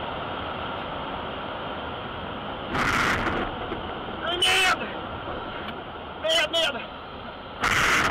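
Steady rush of airflow in the cockpit of a light aircraft gliding with its engine failed. Brief fragments of muffled speech come twice in the middle, and there are two short loud noise bursts, about three seconds in and near the end.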